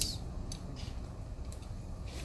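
A few faint, irregular clicks of a glass thermometer and metal fittings being handled in the lid of a flash point tester, over a steady low hum.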